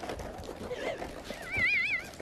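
A dog giving a high, wavering whine near the end, its pitch wobbling quickly up and down, with a fainter whine about a second in. Fur rubbing against the microphone rustles underneath.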